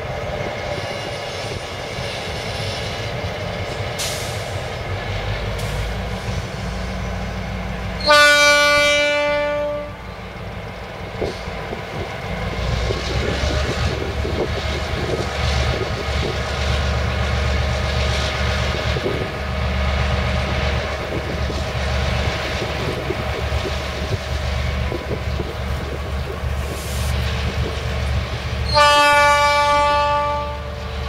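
ALCO RSD-16 diesel locomotive running, its engine rumble growing heavier from about twelve seconds in as it works to shunt its hopper wagons. Its horn sounds two blasts: one of about two seconds about eight seconds in, and another starting near the end.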